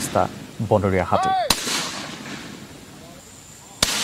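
Two loud explosive bangs about two seconds apart, each followed by a fading echo. They are blasts set off by forest staff to scare wild elephants away.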